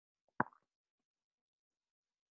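A single short click about half a second in.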